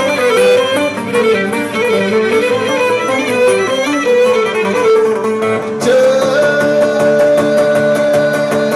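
Live Cretan folk dance music: a bowed lyra plays a fast melody over plucked laouto accompaniment. Near the end the melody settles on a held note over steady, even strumming.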